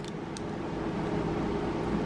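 A steady mechanical hum with hiss and a faint held tone, slowly growing a little louder.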